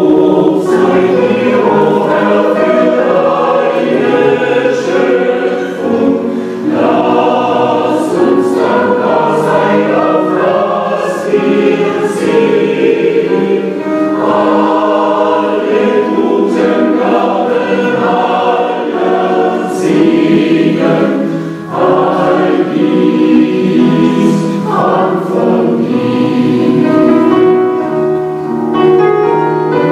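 A large choir of adult mixed voices together with a children's choir singing in chorus, loud and sustained, with short breaths between phrases.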